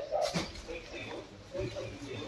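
Indistinct voices in the room, with one short falling voice-like sound a quarter second in.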